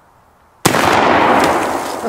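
A single shot from an original Remington Rolling Block rifle in .45-70 with a black-powder load, a little over half a second in. It is very loud and sudden, with a long echoing tail that dies away over more than a second.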